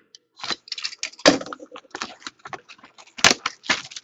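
Plastic shrink wrap being slit and torn off a sealed trading-card box: irregular crinkling and crackling, loudest about a second in and again near the end.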